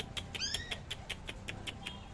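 A puppy gives a short, high whine about half a second in, over a faint, fast, even ticking in the background.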